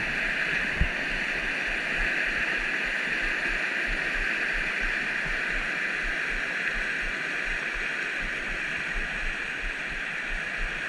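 Rushing water of a rocky mountain trout creek running over riffles and small rapids, a steady rush. A single soft low bump comes about a second in.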